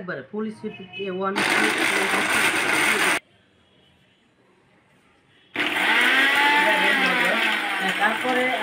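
Philips 750-watt mixer grinder's motor running at full noise as it grinds whole dried turmeric in the small steel jar. It runs for about two seconds, cuts off abruptly, and starts again a couple of seconds later.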